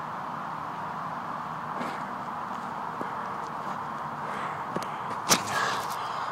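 Steady outdoor background hiss with a few faint clicks, then a single sharp knock a little after five seconds in and a short rustle as the phone camera is picked up off the ground and handled.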